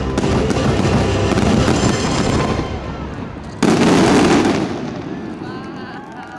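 Fireworks finale: a dense barrage of rapid bangs and crackle for about three seconds, then one sudden loud boom about three and a half seconds in that dies away.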